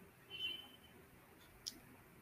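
Quiet room tone broken by a brief, faint high tone about half a second in and a single computer mouse click near the end.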